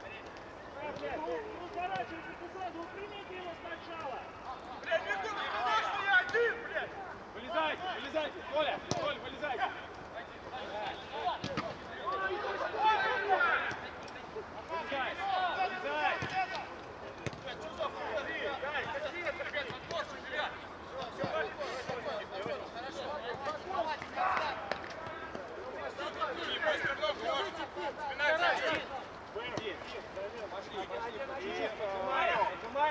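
Footballers' voices shouting and calling to one another across an open pitch during play, coming in bursts, with a few sharp knocks scattered among them.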